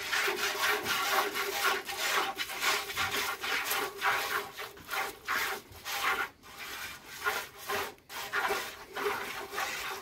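A cow being milked by hand into a metal pail: jets of milk squirt into the pail in a quick, even rhythm of about three squirts a second.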